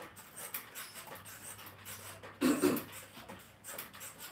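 Mini stepper working under steady stepping, giving faint repeated creaks and clicks. A brief, louder pitched cry stands out a little past halfway.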